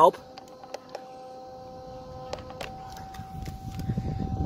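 A few small plastic clicks from the buttons of a GPS speed meter being pressed to clear its reading, over a faint steady high hum. A low handling rumble builds near the end as the RC truck is moved.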